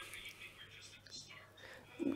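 Near silence in a pause between spoken phrases, with only faint breathy traces of a voice.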